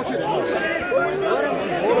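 Several men shouting and calling over one another at once, players and onlookers at an amateur football match, with no words standing out.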